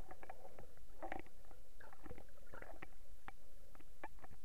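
Underwater sound picked up by a submerged camera: a muffled, steady low rumble of water with irregular short clicks and gurgles scattered through it.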